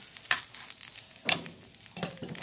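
Bánh xèo crepe sizzling in oil in a nonstick frying pan, with two sharp strokes of a plastic spatula against the pan about a second apart.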